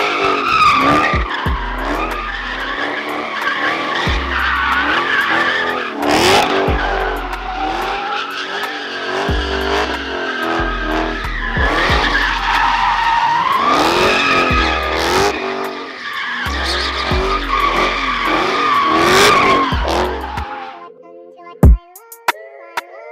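Dodge Challenger SRT Hellcat's supercharged V8 revving hard during a burnout, with the rear tires squealing as they spin. The revs rise and fall several times and stop near the end.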